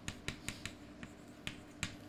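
Chalk writing on a chalkboard: an irregular run of about seven sharp taps and clicks as letters are struck onto the board.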